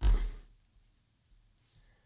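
A man's voice says a single breathy, drawn-out "I" at the start, with a low rumble on the microphone. Near silence follows: room tone.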